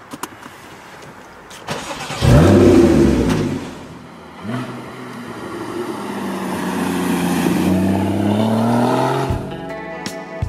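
Porsche Cayman GTS's flat-six engine revving hard under acceleration about two seconds in, then pulling again with a slowly rising pitch from about five seconds until it cuts off suddenly near the end, where guitar music comes in.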